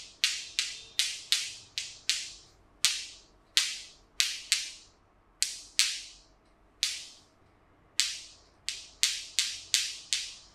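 A run of sharp clicks in an uneven rhythm, about two a second and some twenty in all, each ringing off quickly.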